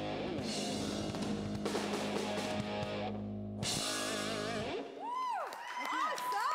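Live disco band playing the end of a song, with electric guitar, bass and drums under sustained chords. The band stops about three quarters of the way through, and voices whoop as the song ends.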